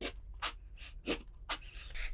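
A ribbed wooden dowel sliding in and out of the sleeve of a Sir Richard's Control shampoo-bottle male stroker: a few faint, soft rubbing swishes.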